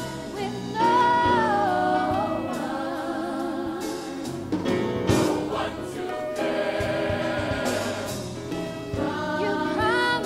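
Gospel choir singing in harmony, with long held notes that waver in vibrato and rise and fall in pitch.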